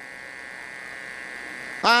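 A steady electrical hum with a faint buzz, unchanging through a pause in the talk; a man's voice starts up near the end.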